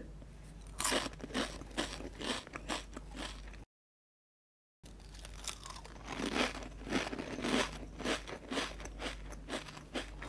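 Close-miked crunching and chewing of thin, crispy seaweed-teriyaki-flavoured crisps: a bite, then a dense, irregular run of crunches as they are chewed. The sound cuts out completely for about a second near the middle, then the chewing crunches start again.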